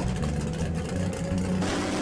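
Drag-race car engine running at a lumpy idle, a steady low rumble, with a broader rushing noise joining about one and a half seconds in.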